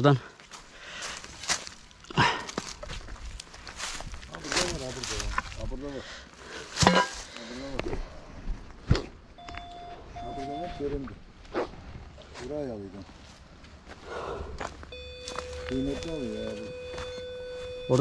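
Steps and scuffing on stony, leaf-covered ground, with scattered sharp knocks. A metal detector gives two short steady tones about halfway through and a longer steady tone over the last few seconds, its signal that it is picking up metal, which the hunters take for precious metal.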